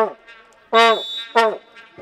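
A horn blown from the crowd in short, loud blasts, each held at one steady pitch and sagging down as it ends: a longer blast about a second in, then a short one right after it.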